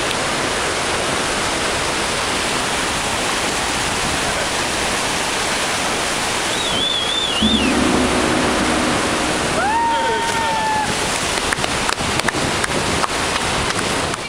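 Steady roar of Victoria Falls pouring over the cliff right beside the pool. Brief shouts rise above it about seven and ten seconds in.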